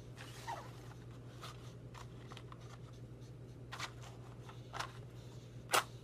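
Faint, scattered clicks and taps of a tobacco pipe being handled and set between the teeth, over a steady low hum. The sharpest click comes near the end.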